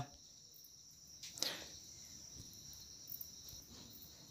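Faint handling sounds of a smartphone being shaken by hand: a brief soft rustle about a second and a half in and a light tick near three seconds, over a steady faint high-pitched hiss.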